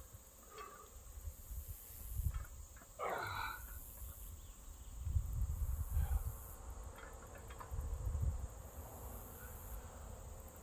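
Insects trilling high-pitched in on-and-off pulses, with intermittent low rumbles and a short falling sound about three seconds in.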